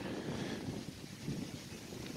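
Quiet outdoor background: light wind on the microphone, heard as a low, even rumble.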